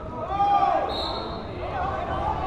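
Spectators and coaches shouting in a gym, with a short, high referee's whistle about a second in that starts the wrestlers from the referee's position.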